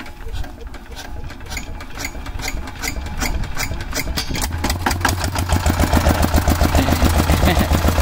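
Single-cylinder diesel engine of a two-wheel walking tractor starting up: slow, uneven firing strokes come faster and louder over the first few seconds. About five seconds in, the engine settles into a steady, loud running beat.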